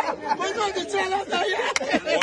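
Several people talking over one another in lively chatter.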